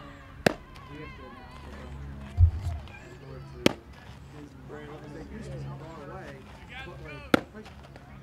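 A baseball smacking into a catcher's mitt three times, each a sharp pop, about three and a half seconds apart. There is a dull low thump a little before the second catch.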